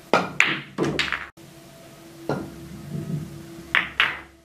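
A pool shot: the cue tip strikes the cue ball, followed by several sharp clicks of billiard balls colliding within the first second. Then come the rumble of balls rolling across the cloth and two more knocks, a little over two seconds in and near the end, as balls are pocketed.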